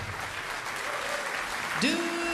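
Audience applauding after the big band cuts off. Near the end a woman's voice slides up into a long held sung note.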